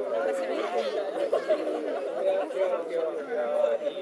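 Chatter of a group of people talking at once, several voices overlapping with no single speaker standing out.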